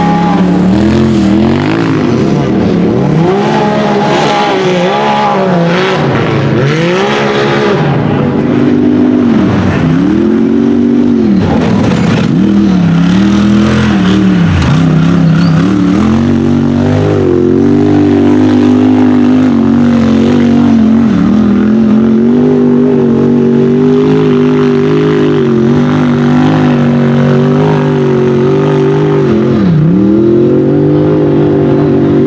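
Sport UTV engine revving hard on a steep hill climb, its pitch repeatedly surging and dropping with bursts of throttle, then held at a steady high rev through the second half with one brief dip near the end.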